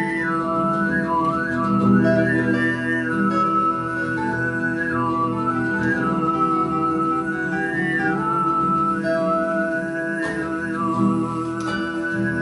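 Overtone throat singing: a steady low vocal drone with a whistle-like melody of overtones rising and falling above it, over two acoustic guitars, one of them a Taylor K24.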